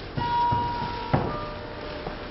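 A steady, high-pitched tone held for about a second, cut off by a sharp click, after which fainter steady tones linger.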